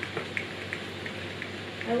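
Steady background hiss over a faint low hum, with a few soft, irregularly spaced light ticks. A woman's voice begins calling the cat's name at the very end.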